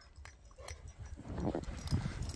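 Kangal dog bounding through deep snow up to the microphone, its footfalls getting louder over the second half.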